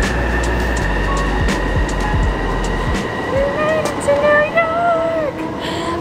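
Outdoor traffic noise with a strong deep rumble that dies away about three seconds in. Over the last couple of seconds a voice makes drawn-out, gliding tones without words.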